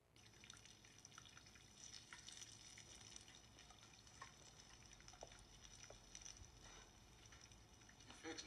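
Chicken frying in oil in a skillet over a flame that is way too high: a faint, steady sizzle with scattered small pops, starting abruptly.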